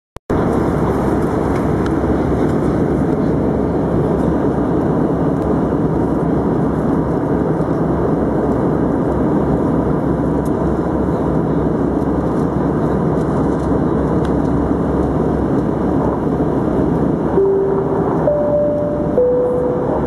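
Steady cabin noise of an Airbus A319 in descent: the even rumble of engines and airflow heard from a window seat. Near the end a three-note chime sounds, low, high, then middle, the cue for a cabin announcement.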